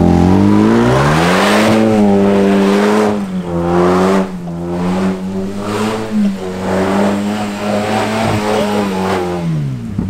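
Hyundai Veloster Turbo's turbocharged 1.6-litre four-cylinder revving hard while the car does donuts on loose sand. The revs climb in the first second or so, are held high and steady with small wobbles, then drop near the end, over the rush of the wheels spinning and spraying sand.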